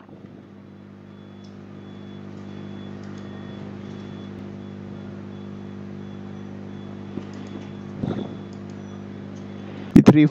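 A steady low mechanical hum, a motor or engine running, that swells over the first couple of seconds and then holds steady.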